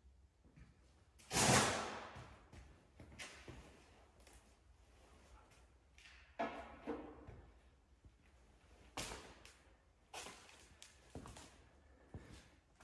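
Scattered knocks and clunks, half a dozen over the stretch, the loudest about a second in, each ringing on briefly in a large metal shop building.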